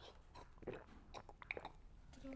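Faint mouth sounds of someone sipping a drink from a cup: a handful of small clicks and smacks.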